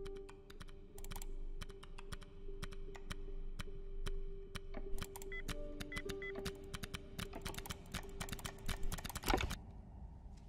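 Rapid clicking of a computer keyboard being typed on, over a steady low held music tone, with short electronic beeps a little past the middle. The clicks thicken into a fast flurry with one louder burst near the end.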